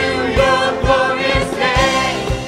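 Live worship band: several voices singing in harmony over acoustic guitar and keyboard, with a steady low beat about twice a second.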